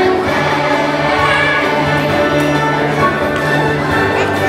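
Music: a choir singing held notes over an accompaniment, at a steady level.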